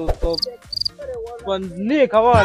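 Two short, high insect-like chirps about half a second in, amid a few clicks. After them a voice holds a note that rises near the end.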